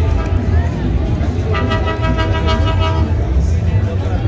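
A horn sounds one steady note for about a second and a half, starting near the middle, over street hubbub with voices and a constant low rumble.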